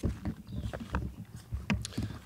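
Footsteps on dry leaves and grass with camera-handling bumps: irregular low thumps and a few sharp crackles, the clearest near the end.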